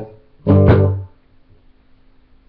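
Electric guitar chord struck twice in quick succession about half a second in, ringing briefly and then stopped short, leaving only faint room sound.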